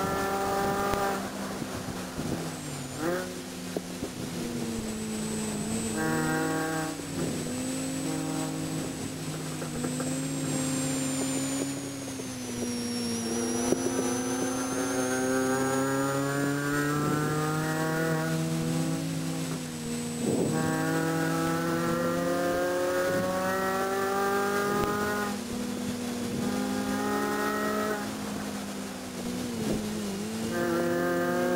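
Supercharged 1.6-litre four-cylinder engine of a 2006 Mini Cooper S JCW race car, heard from inside the cabin under hard driving. Its pitch drops as the car brakes and downshifts for a corner. It then climbs steadily as the car accelerates out, falling back at each gear change and climbing again.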